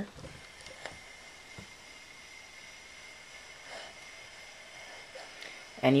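Quiet room tone with a faint steady high-pitched whine and a few soft, faint taps.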